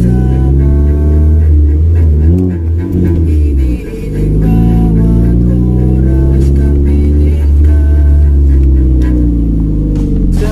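Honda Civic engine and exhaust drone as the car accelerates, the pitch rising and falling with a brief drop about four seconds in, under a guitar-backed song.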